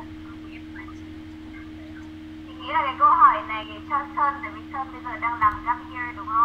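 Speech over a thin, narrow-band online call line, starting about two and a half seconds in, with a steady electrical hum underneath throughout.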